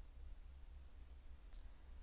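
Faint computer mouse clicks, two or three light ticks about a second in, over a low steady hum.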